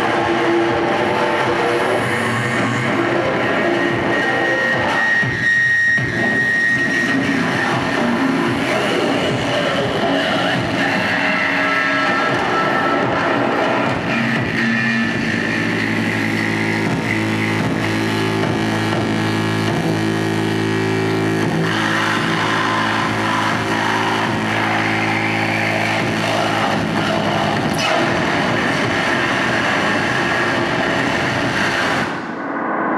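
Live harsh noise music played on a flight case of effects pedals and electronics through PA speakers: a loud, unbroken wall of distorted noise. About halfway through, a steady low drone sets in under the noise and holds until near the end.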